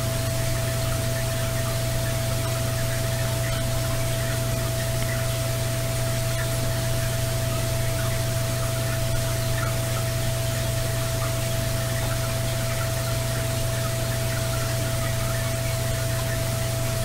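Heavily amplified background noise of a handheld voice recorder: a steady hiss over a constant low hum and a thin steady tone, with no clear voice. The uploader marks a faint 'get out' in it about halfway through, taken as an EVP.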